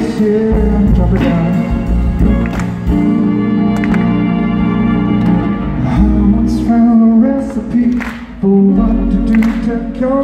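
Live band music: an archtop guitar and a double bass playing, with singing.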